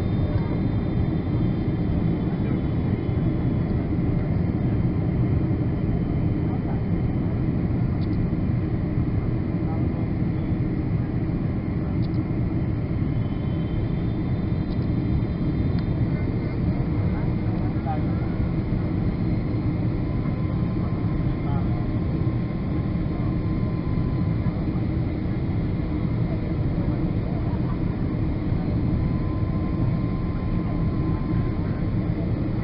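Steady cabin noise of a Boeing 777 on approach: a constant deep rumble of the engines and rushing air, heard from inside the passenger cabin, with a faint steady whine running along under it.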